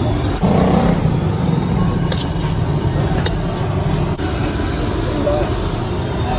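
Steady street traffic rumble with voices in the background, and a few sharp clicks about two and three seconds in.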